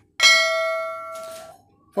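A single bright bell ding from a notification-bell sound effect, as the subscribe animation's bell icon is clicked. It strikes once and rings out, fading over about a second and a half.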